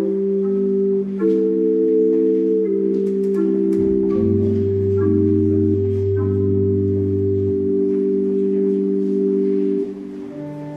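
Organ music: slow, held chords that change every second or two, with a deep bass note entering about four seconds in and dropping out some three seconds later.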